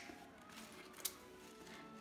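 A single sharp snip of wire clippers cutting through a wire-cored artificial tulip stem about a second in, over faint background music.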